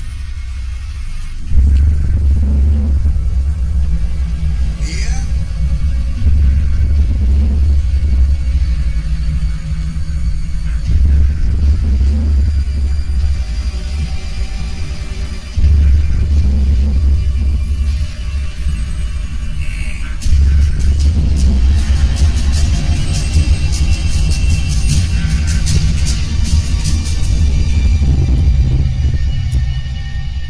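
Dark, suspenseful film score: deep low rumbling drones that swell in long surges every few seconds, with a hissing high texture building up in the later part.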